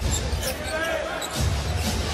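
Basketball game sound on a hardwood court: a ball bouncing amid a steady arena crowd rumble.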